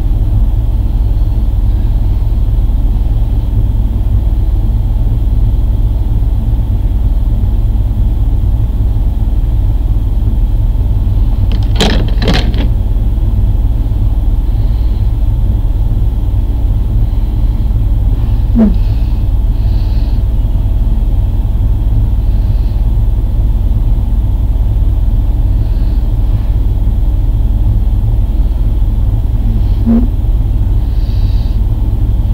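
A steady low rumble throughout, with two sharp clicks close together about twelve seconds in and a fainter click a few seconds later.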